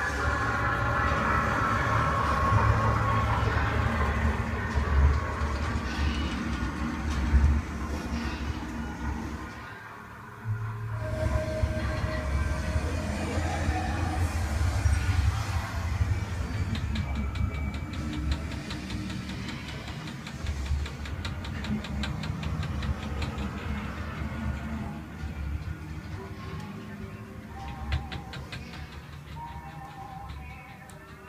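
A loud, steady low rumble with music over it, cutting out briefly about ten seconds in.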